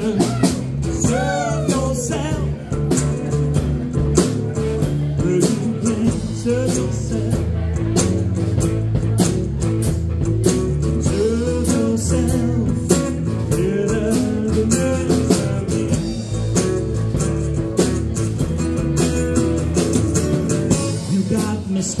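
Live band playing an upbeat blues-tinged country-rock song on acoustic guitar, electric guitar and drum kit, with a steady drum beat under bending melody lines.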